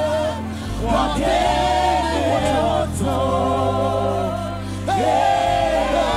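Ghanaian gospel worship song performed live: lead singer and backing choir singing held phrases into microphones, over a band with a steady bass line.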